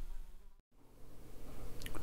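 A low, steady electrical buzzing hum that fades out to silence about half a second in and fades back in after about a second.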